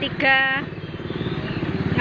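A motorcycle engine running close by, with a fast, even firing pulse that continues steadily after a brief spoken word at the start.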